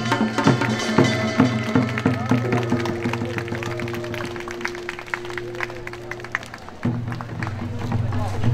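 Korean traditional percussion music: quick light drum and gong strokes continue under a long held note, which stops about three-quarters of the way through, and fuller playing returns near the end.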